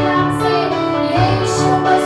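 A woman sings a Hindi worship song into a microphone, her sustained, gliding melody carried over an electronic keyboard's chords and bass notes.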